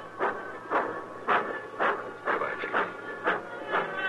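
Radio-drama sound effect of a steam locomotive pulling out of the station: a steady rhythm of chuffs about two a second, with a hiss of steam.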